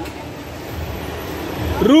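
Steady mechanical running noise of a pendulum amusement ride starting to swing, mixed with the general noise of the amusement park and growing slightly louder. Near the end a voice shouts a name.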